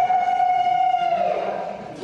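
A single voice holding one long, high sung note at a steady pitch, which slides down and fades out about a second and a half in.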